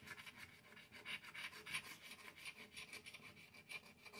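Faint, rapid rasping of a coin scraping the coating off a scratch-off lottery ticket, several short back-and-forth strokes a second.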